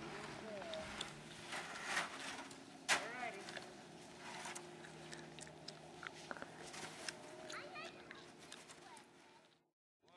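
Faint, distant talk from an adult and a child, with scattered irregular crunches and clicks. The sound cuts out completely just before the end.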